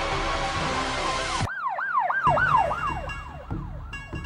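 Dance music cuts off abruptly about a second and a half in, giving way to a siren sound effect in the routine's music mix: a fast run of falling sweeps, about four a second, that fades away.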